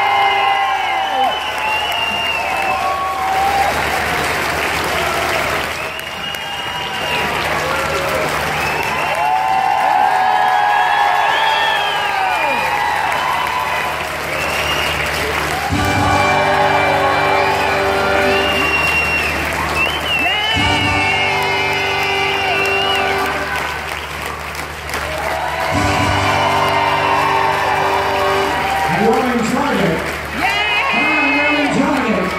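Show music with singing over the sound system, with an audience applauding.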